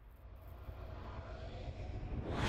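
A low, rumbling drone from a logo-intro sound effect, slowly swelling louder.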